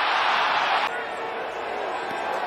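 Stadium crowd noise from a football crowd, an even wash of sound that drops abruptly to a quieter crowd murmur about a second in.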